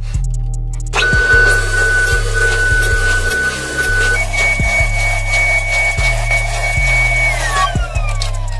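Table saw starting about a second in with a high whine and cutting through hardwood on a sled, over background music with a steady beat. Near the end the whine falls in pitch as the saw is switched off and the blade spins down.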